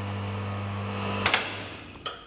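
TW S3-10E scissor lift's electric drive running with a steady hum while the lift rises, then a sharp click just over a second in as the upper limit switch cuts it off, and the hum dies away.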